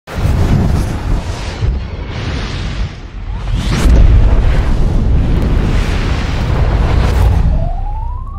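Cinematic logo-intro sound effects: a loud, deep booming rumble with several whooshing sweeps, loudest about halfway through as the light flashes. A rising tone begins near the end.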